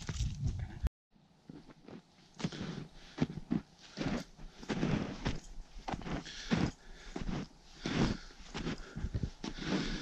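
Footsteps crunching through deep snow with a crusted top layer, about two steps a second. Before them there is a brief bit of handling noise that cuts off about a second in.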